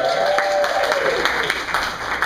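Audience applause, with a voice raised over it for the first second and a half; the clapping thins out near the end.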